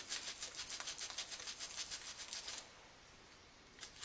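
Rapid back-and-forth strokes of sandpaper rubbed by hand on the steel cocking lever of an HW 77/97 air rifle, smoothing the filed spots. The strokes stop about two and a half seconds in, and a short scrape follows near the end.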